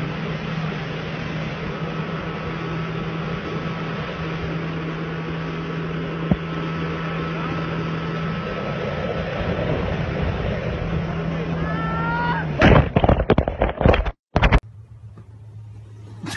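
A speeding motorboat: the engine runs with a steady hum under rushing water and wind noise. About three-quarters of the way through, a series of loud bangs and crashes breaks in, and then the sound cuts off.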